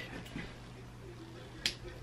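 A single short, sharp snip of scissors cutting a string on a fabric top, a little over a second and a half in.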